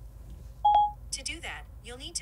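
An iPhone voice assistant answers a spoken command: a short electronic two-tone beep about two-thirds of a second in, then a faint synthesized voice replying through the phone's small speaker.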